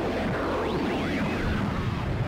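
Dramatic rumbling sound effect with whooshing and swirling whistles that rise and fall, holding a steady loudness.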